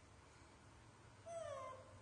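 A baby macaque gives one short, high call that falls in pitch, like a meow, a bit over a second in.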